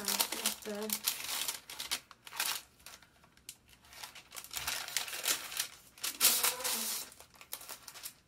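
Paper rustling and crinkling as a sealed paper bag is opened and sheets of paper are slid out, in two spells with a quieter gap in the middle.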